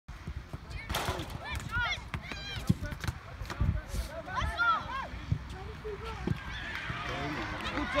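Young footballers' high-pitched shouts and calls across the pitch during open play, with a few sharp thuds over a steady low rumble.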